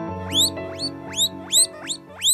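Guinea pig wheeking: about five short squeals, each sweeping sharply upward in pitch, coming two or three a second over background music.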